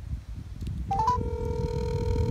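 A phone on speakerphone placing an outgoing call: a quick three-note rising chirp about a second in, then a steady ringback tone. Wind rumbles on the microphone underneath.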